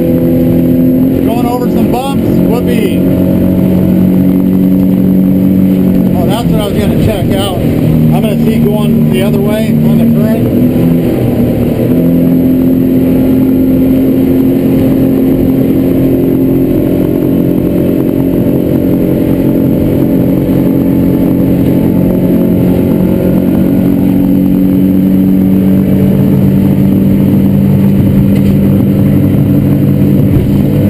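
Suzuki DF300 V6 four-stroke outboard running under way, heard from inside the boat's hardtop cabin. Its pitch wavers and shifts between about six and ten seconds in as the engine speed changes, then holds steady.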